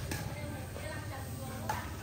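Faint voices talking at a distance over a steady low hum, with one sharp tap near the end.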